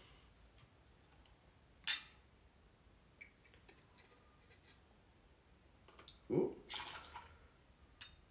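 Gin poured from a bottle into a metal jigger, faint trickling, with a sharp click about two seconds in.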